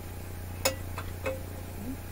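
Small plastic clicks from a Baby Lock serger being threaded by hand: one sharp click about two-thirds of a second in, then two lighter clicks, as the needle thread is drawn into the guides and tension slot, over a low steady hum.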